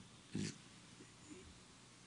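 Quiet room tone with one short breath noise from the man at the microphones about a third of a second in.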